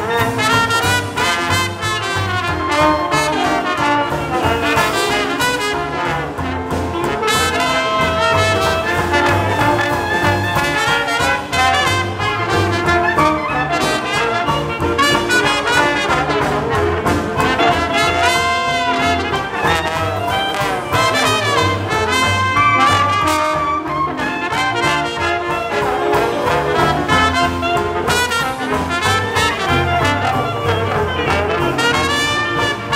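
Traditional jazz band playing live: trumpet, trombone and clarinet weaving lines together over piano, string bass and drums, with a steady beat in the bass.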